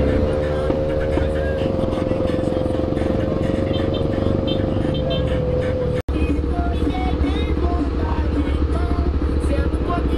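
Honda XRE 300 single-cylinder motorcycle engine running in slow city traffic among other motorcycles. The sound drops out for an instant about six seconds in, and after that the engine runs on with a low pulsing beat.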